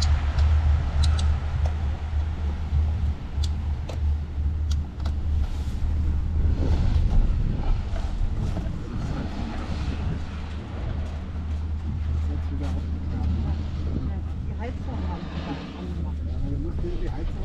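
Steady low rumble of a ride on a Doppelmayr six-seat chairlift, with scattered light clicks and knocks in the first half.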